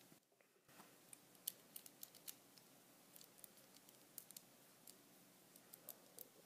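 Plastic Lego Technic parts clicking and tapping as they are handled and pressed together: a scatter of short, quiet clicks, the sharpest about a second and a half in.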